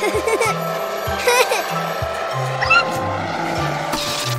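Cartoon background music with a stepping bass line, with short squeaky character vocalizations over it a few times and a steady rushing noise from the toy car coming in about a second and a half in.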